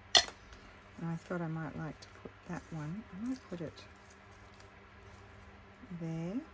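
A sharp click just after the start, then a woman's voice making a few short wordless sounds with held and gliding notes, like humming.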